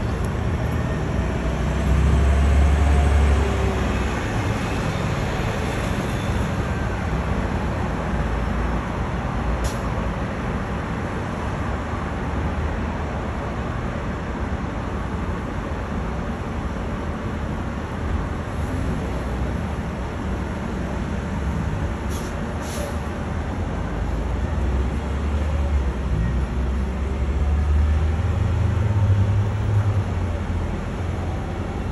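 Steady city road traffic noise, with the deeper rumble of passing vehicles swelling near the start and again near the end.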